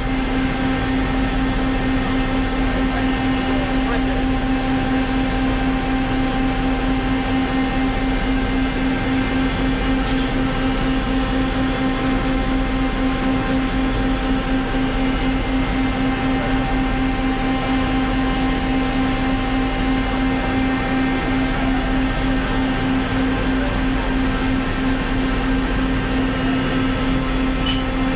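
Steady, unchanging engine drone with a strong low hum and several fixed higher tones above it.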